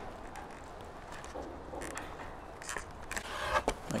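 Quiet handling noise: fingers pressing a micro servo into a foam wing and shifting the wing about, with a few faint rubs and light taps in the second half, over a low steady hum.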